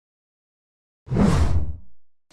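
Logo-intro sound effect: silence, then about a second in a sudden loud whoosh-and-hit with a deep rumble underneath, dying away.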